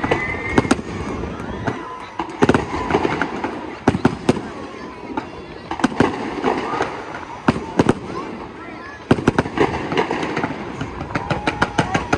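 Fireworks display: sharp bangs and crackles from aerial shells and comets going off at irregular intervals, coming more thickly in the second half.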